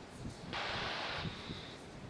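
A short burst of hiss, under a second long, ending in a faint thin high tone, over a steady low wind-like rumble.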